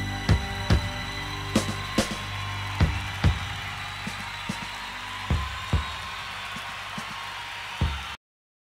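Rock music at the close of a song: a held chord rings out and slowly fades while drums play scattered, irregular hits.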